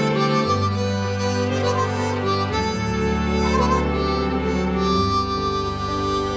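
Instrumental music with no singing: a harmonica plays a sustained melody over a bass line, and the chords change about every two and a half seconds.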